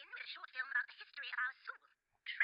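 Cartoon dialogue: a character speaking in short phrases, played back thin and tinny with no low end.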